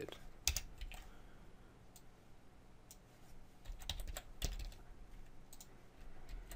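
Computer keyboard typing: faint keystrokes in short, uneven runs.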